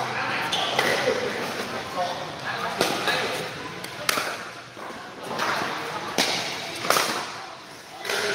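Pickleball paddles striking a hard plastic ball in a rally: a series of sharp pops, a second or two apart, ringing in a large hall, over the chatter of players.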